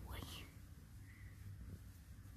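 A soft, breathy spoken word trailing off at the start, then a quiet background with a low hum.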